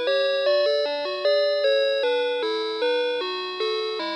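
Playskool Storytime Gloworm playing an electronic lullaby melody through its small speaker. The chime-like notes come one at a time, about two a second, each starting sharply and fading.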